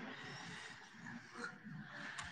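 Faint room tone of a large hall, with a low murmur of voices.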